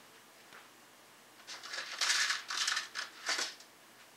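Rummaging through small parts while searching for one more screw: a handful of short rustling, rattling bursts in the second half, after a quiet start.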